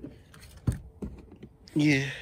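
Hands working a pickup's flipped-up rear seat and the plastic storage lid beneath it: a few light clicks and knocks, the sharpest about a third of the way in.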